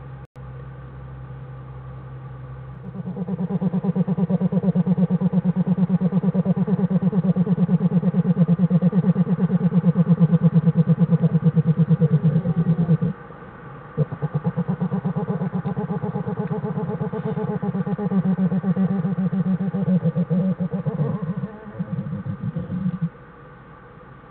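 Black bear cubs humming while nursing: a loud, rapid, pulsing hum that starts about three seconds in, breaks off for about a second near the middle, then resumes and stops shortly before the end.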